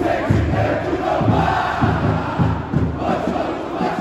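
Large crowd of football supporters chanting together in the stands, with a regular low beat underneath.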